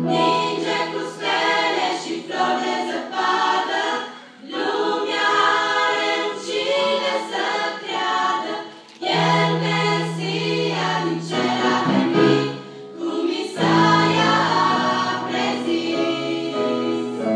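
A girls' choir singing a hymn in unison and harmony, over low sustained accompaniment notes. It breaks briefly between phrases about 4 and 9 seconds in.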